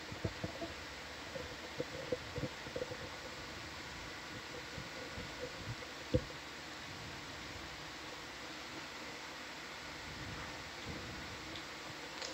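Steady, quiet equipment hum and hiss of a control room, with scattered soft clicks and knocks in the first half and one sharper knock about six seconds in.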